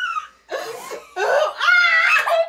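Girls laughing loudly in two bursts, the second longer and louder.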